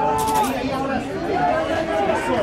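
Several voices shouting and chattering over one another, with a few sharp clicks among them; the voices are loudest in the first half-second.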